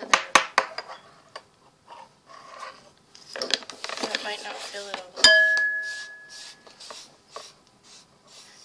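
Metal spoons clinking and scraping against a dish while ground cinnamon is spooned out. One sharp clink, a little past halfway, rings on for about a second and a half.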